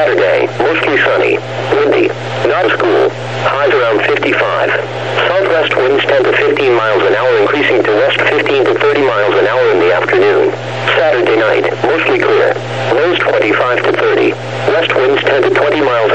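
NOAA Weather Radio's synthesized text-to-speech voice reading a weather forecast, heard through a radio receiver, with a steady low hum beneath it.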